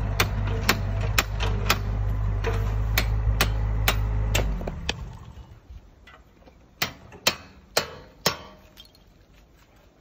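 A hammer knocking apart a concrete block wall, with sharp knocks about two a second over a steady low engine hum. The hum cuts off about four and a half seconds in, and four louder strikes follow near the end.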